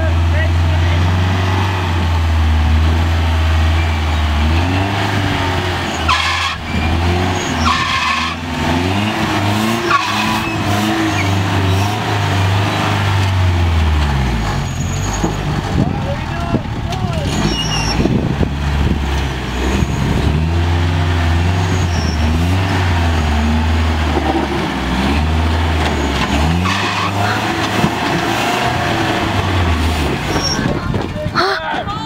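Lifted Toyota rock crawler's engine revving under load as it crawls up a granite ledge, its pitch rising and falling with repeated throttle blips.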